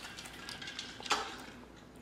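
Liquor poured from a bottle over ice cubes in a small glass: a faint trickle with light clicks of ice, and one sharper clink about a second in.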